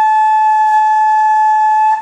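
Flute headjoint blown on its own, without the body of the flute: one steady, clear held note that stops right at the end. It is a beginner's headjoint embouchure exercise.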